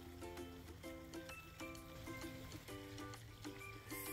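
Soft background music: a melody of short pitched notes changing every fraction of a second.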